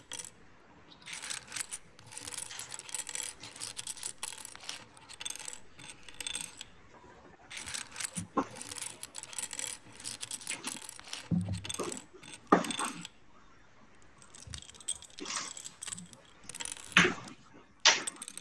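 Loose plastic Lego bricks rattling and clicking as hands rummage through a pile and snap pieces together, in runs of rapid clatter with short pauses between them. A couple of louder knocks come in the second half.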